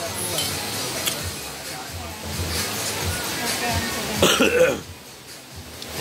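A person coughs once, a short loud burst about four seconds in, over background voices and music.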